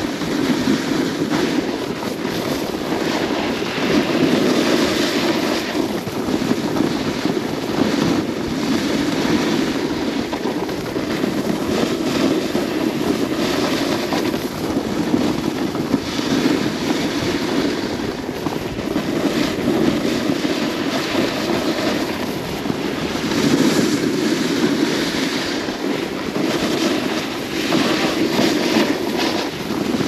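Wind rushing over the microphone during a downhill ski run, with the hiss of skis on the snow swelling and fading every few seconds.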